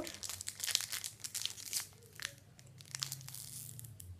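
An AFL TeamCoach trading card packet being torn open, its wrapper crinkling in a run of irregular crackles.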